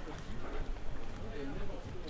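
People talking nearby in voices too indistinct to make out, over steady street background, with footsteps on the pavement.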